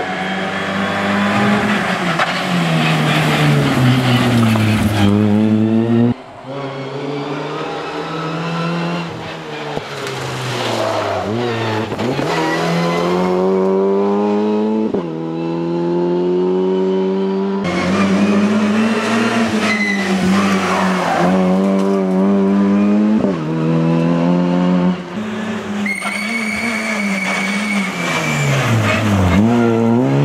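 Opel Adam rally car engine revving hard through its gears, the pitch climbing and falling again and again as it brakes and accelerates through bends; the sound breaks off and resumes several times. Near the end a steady high squeal sounds for about two seconds.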